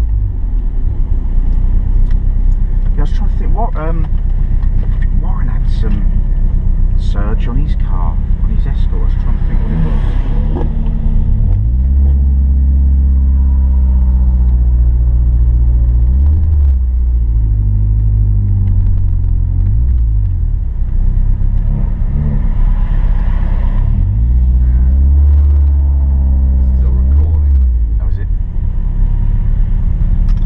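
Ford Sierra Sapphire RS Cosworth's turbocharged 2.0-litre four-cylinder engine heard from inside the cabin while driving. The revs fall and rise several times over steady road noise.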